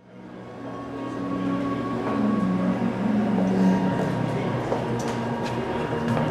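Room ambience of an exhibition gallery fading in: a steady low hum and rumble with a faint high tone, and a few light taps near the end.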